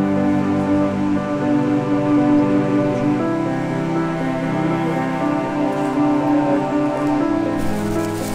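Slow background music of long held notes.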